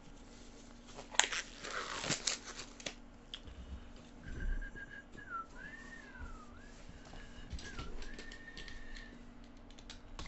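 A person softly whistling a short tune whose pitch moves up and down for a few seconds, over the knocks and rustle of card boxes being handled with gloved hands; a burst of rustling and knocks about a second in is the loudest sound.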